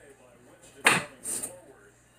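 Kitchen handling noise: a single sharp impact about a second in, followed by a short hissing rustle.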